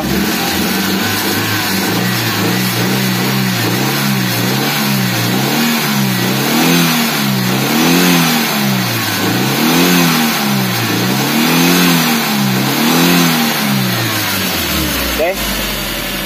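Suzuki APV four-cylinder petrol engine being blipped over and over, the revs rising and falling smoothly about once every second and a half. It settles back to idle near the end. The revs pick up cleanly, without the stumbling ('mbrebet') the engine has been repaired for.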